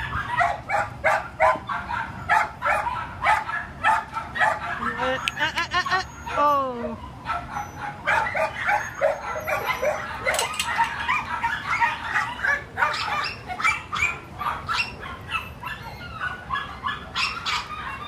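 Dogs barking over and over, in short repeated barks, with a few falling yelps or whines about five to seven seconds in.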